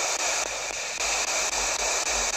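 P-SB11 spirit box sweeping through radio frequencies, giving a steady wash of radio static from its speaker.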